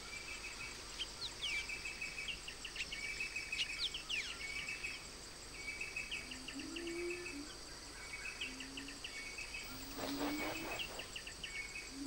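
Tropical forest ambience: a steady high insect drone under a bird's short chirping phrases, repeated about every second or so. A few low hooting calls come in during the second half.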